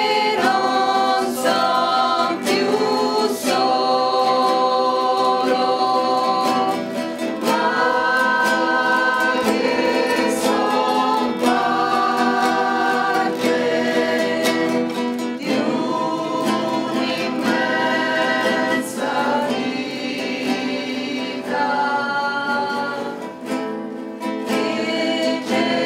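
A mixed group of amateur voices singing a pastorella, a traditional Italian Christmas carol, in unison, accompanied by two strummed acoustic guitars. The notes are long and held, in phrases that break off every several seconds.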